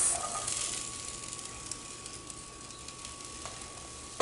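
Diced sweet potatoes and onions sizzling in an oiled cast iron frying pan as precooked red beans are tipped in; the sizzle is strongest at first and dies down over a couple of seconds.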